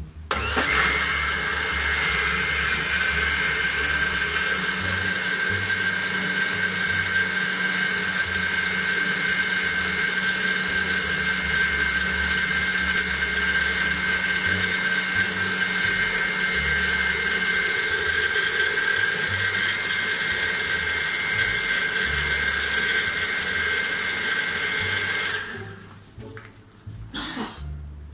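Small countertop electric blender running at a steady pitch with a constant whine, blending the egg base of a creamy salad dressing before any oil goes in. It starts abruptly just after the beginning and cuts off shortly before the end.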